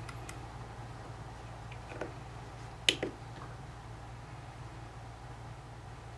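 A few faint plastic clicks from handling a TC1 multi-function component tester as a resistor is clamped into its ZIF test socket and the test is started, the sharpest click about three seconds in. A steady low hum runs underneath.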